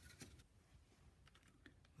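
Near silence with a few faint light clicks and crinkles from a plastic model-kit sprue being handled in its clear plastic bag.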